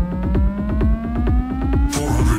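A synthesized frequency-sweep tone in a trance track, climbing slowly and steadily in pitch over a driving beat with a kick about twice a second.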